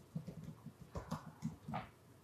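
Typing on a computer keyboard: a quick, faint run of soft keystrokes, about five or six a second, as an English word is typed.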